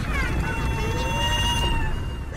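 A high-pitched, meow-like squealing voice: a short falling squeak, then one long high note held for over a second and cut off near the end, over a low rumble.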